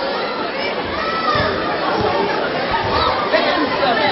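A group of young voices chattering and calling out at once, overlapping with no single speaker standing out. A few low bumps come near the middle.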